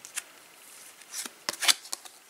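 Topps Match Attax trading cards being slid and flicked against one another in the hands, making a few short, crisp swishes and snaps. The loudest two come close together about one and a half seconds in.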